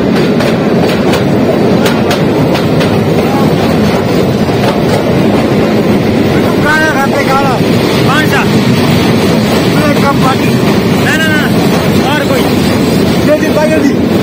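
Narrow-gauge toy train carriage running through a long tunnel: a loud, steady rumble of wheels on rail, with a few sharp clicks in the first couple of seconds.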